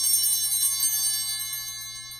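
Altar bells rung at the epiclesis, as the priest's hands are held over the bread and wine: a bright, high, shimmering ring that dies away slowly.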